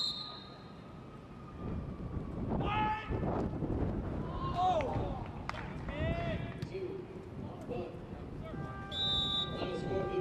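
A referee's whistle blows once at the start for the free kick. Players then shout across the pitch as play moves toward the goal. Near the end come two more short whistle blasts.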